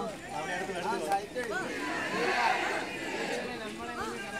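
Crowd chatter: many people on foot talking at once, their voices overlapping, with one nearer voice standing out about a second in.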